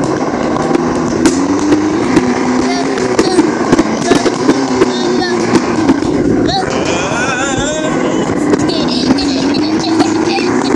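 A box sliding and scraping across the floor with a child riding in it, a continuous rough rumble with small knocks. The child lets out short high squeals of delight about six and a half and seven and a half seconds in.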